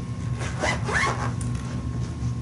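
Zipper of a leather Bible cover being pulled in a few quick rising zips about half a second to a second in, over a steady low hum.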